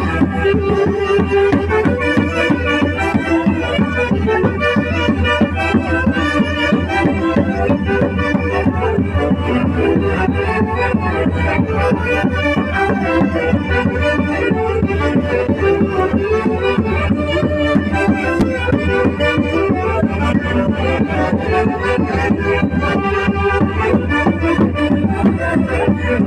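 Lively Andean folk dance music from a live street orquesta, wind instruments carrying the melody over a steady beat.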